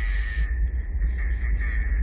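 Cinematic advert sound design: a deep, steady low rumble under a faint steady high hum, with a noisy whoosh in the first half second and scattered faint clicks.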